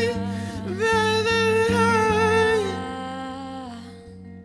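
Wordless singing: a high voice holding long, slightly wavering notes, joined by a lower harmony line about halfway through, over soft guitar accompaniment. It all fades away near the end.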